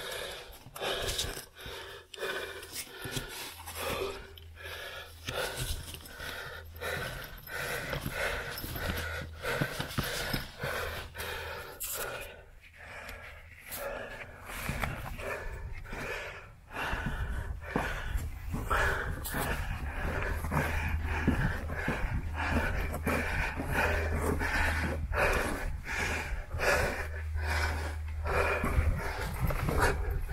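A man breathing hard and panting as he crawls on his knees through a low, narrow tunnel, with frequent scuffs and scrapes of knees and hands on the dirt floor.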